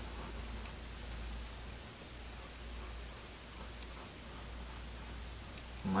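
Mechanical pencil scratching on paper in a series of short, light sketching strokes, over a faint steady low hum.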